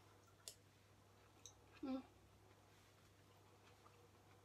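Near-quiet kitchen with a faint steady hum, broken by a sharp click of a metal spoon on the ceramic serving bowl about half a second in and a brief hummed "mm" of tasting near two seconds.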